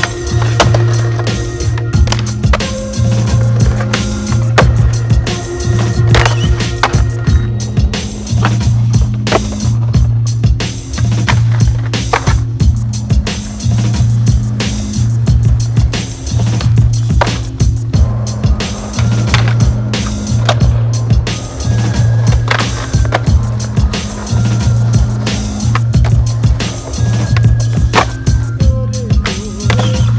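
Skateboard sounds, wheels rolling on pavement and concrete with many sharp clacks of tricks and landings, over music with a deep bass line pulsing in regular blocks.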